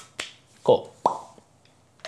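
A quick run of about four sharp pops and clicks over the first second, the loudest and fullest about two-thirds of a second in.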